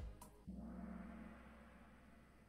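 Kahoot quiz countdown music ends on a final beat, then a gong-like chime rings out about half a second in and slowly fades, the game's sound for time up and the answer being revealed. It is faint, played over a screen share.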